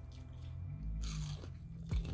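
A person biting into and chewing an air-fried coconut-crusted shrimp, with one louder bite about a second in.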